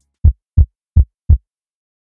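Heartbeat sound effect from a TV programme's ident: four loud, deep thumps evenly spaced about a third of a second apart.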